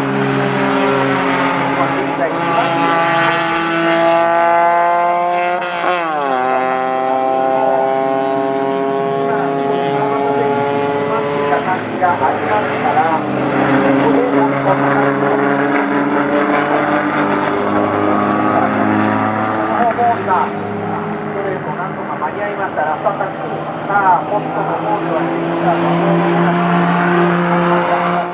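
Race car engine at full throttle on track, its pitch climbing steadily through each gear. There is a sharp drop and quick rise in pitch at a gear change about six seconds in, with more changes of pitch later.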